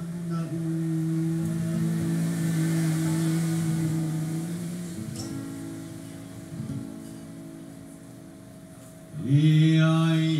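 A man singing a slow song in long held notes, accompanied by two acoustic guitars. The voice falls away about two-thirds of the way through, then comes back loud on a new held note near the end.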